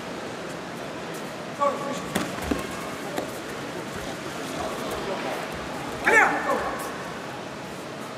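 Indoor arena crowd hubbub with brief shouts about two seconds in and a louder shout about six seconds in, and a few faint knocks.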